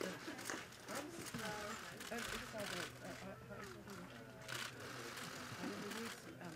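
Faint, indistinct voices of people talking at a distance, over a low steady hum.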